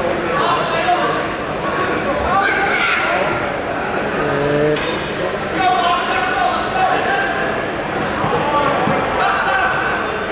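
Voices of coaches and spectators calling out and talking over one another in a sports hall during a grappling match.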